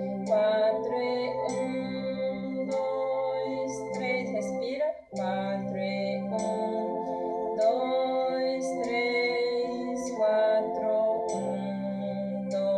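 Organ playing a slow hymn in sustained, held chords, with a metronome clicking the beat. About five seconds in, all the notes break off for a moment at a breath mark, then the chords resume.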